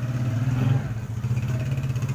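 A small vehicle engine running steadily, swelling slightly about half a second in.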